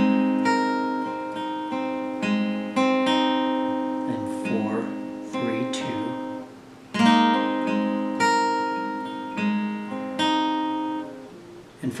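Steel-string acoustic guitar, capoed at the third fret, picked over an F chord with a hammer-on on the third string. A short phrase of single ringing notes is played twice.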